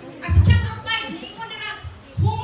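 Speech only: a woman preaching from the pulpit.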